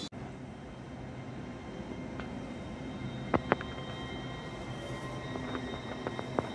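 Steady hum of a passenger train standing at the station, with two sharp clicks about halfway through.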